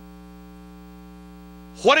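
Steady electrical mains hum, a low drone with a buzzy edge, from the sound system. A man's voice starts near the end.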